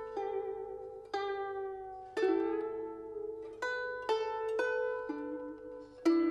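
A Chinese zither playing a slow melody of single plucked notes. Each note is left to ring out, and some waver and bend in pitch.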